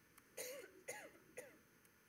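A person clearing their throat: three short bursts about half a second apart, the first the longest.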